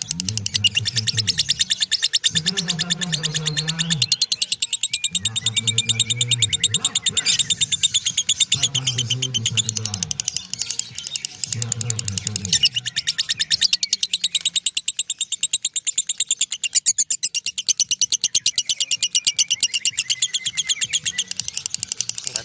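Masked lovebird 'ngekek': a long, unbroken, very fast chattering trill of shrill clicks. It runs without a break for the whole stretch. A low hum comes and goes underneath during the first dozen seconds.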